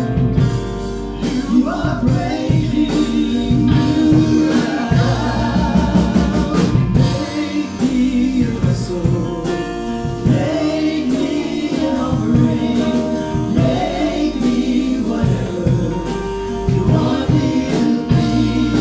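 Live church worship band: several voices singing a worship song together over keyboard chords and a steady low bass line, with regular drum hits.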